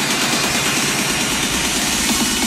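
Techno/trance DJ set in a breakdown or build-up without the kick drum: a dense, noisy synth wash with quick, repeated falling tones.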